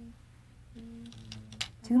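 A quiet stretch in studio commentary: a short held voice hum twice and a few faint clicks over low room tone, then a spoken word near the end.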